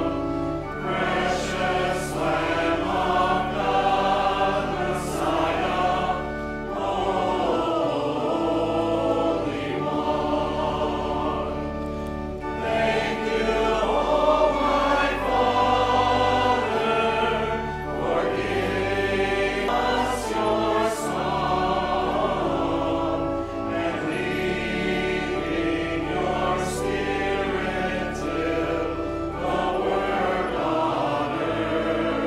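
A church congregation singing a hymn together over sustained low accompaniment notes, in sung lines separated by brief pauses for breath.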